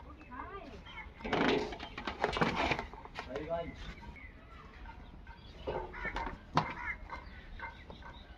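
Chickens clucking and calling, mixed with people's voices, over a low steady rumble.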